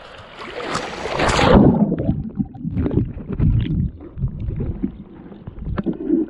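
Seawater splashing against a camera at the surface, then about one and a half seconds in the sound turns muffled and low as the camera goes under: an underwater rumble of moving water with occasional knocks.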